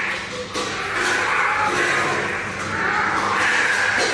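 Tiger cub eating from a steel bowl, a steady noisy slurping and chewing with its head down in the food.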